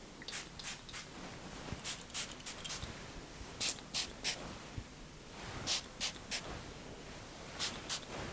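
Faint, quick hissing sprays from a pump spray bottle of heat-protecting hair mist, about a dozen short bursts, often in groups of two or three.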